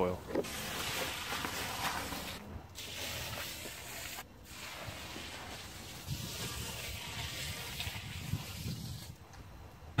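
Worm-casting tea poured from a bucket onto a layer of straw mulch, a steady splashing rush that breaks off briefly twice.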